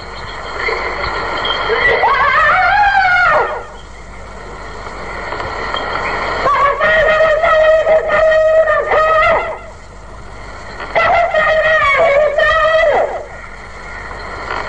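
A man's voice singing a Sindhi naat unaccompanied, in long drawn-out phrases that slide up and down and hold wavering notes. There are three phrases, with short pauses between them.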